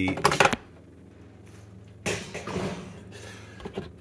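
Clatter and clinking of a dishwasher drawer's wire rack and stainless parts being handled: a loud rattle at the start, a quiet pause, then softer scraping and clicking as parts are moved.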